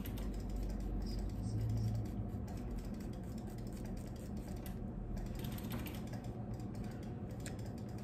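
Scissors cutting the bangs of a wig, a run of light, crisp snips and clicks.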